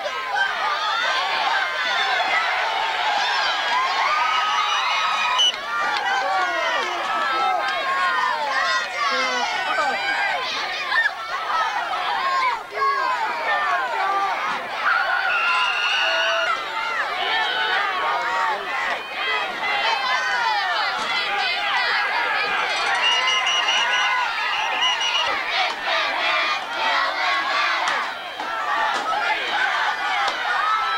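Football spectators shouting and cheering, many voices overlapping. A short, steady, shrill whistle tone sounds about halfway through, as a tackle ends the play, and again later.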